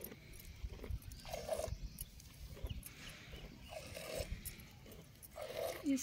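Goat giving three short low calls, about two seconds apart, while being hand-milked.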